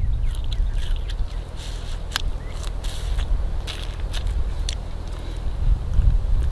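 A person chewing and sucking on a strip of fibrous yucca flower stalk to get the sweet juice out, with irregular soft crunches and clicks over a low, steady background rumble.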